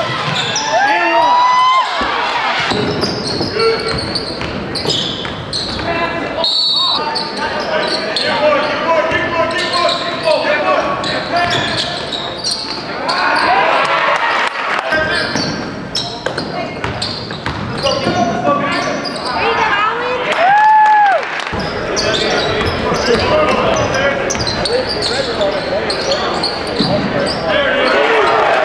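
Indoor basketball game sound in a gym: spectators' voices and calls, and a basketball bouncing on the hardwood court. The sound breaks off and changes abruptly several times as one game clip cuts to the next.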